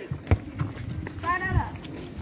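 A few dull thumps and knocks, with a short call from a voice about halfway through.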